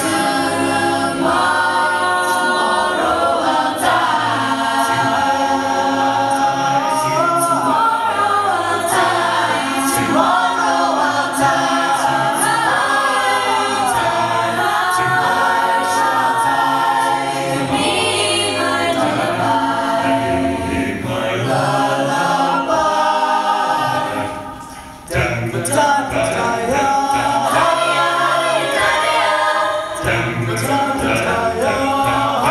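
Mixed-voice a cappella group singing with no instruments, with women taking the lead lines at microphones. About 24 seconds in the singing briefly fades away, then the voices come back in suddenly.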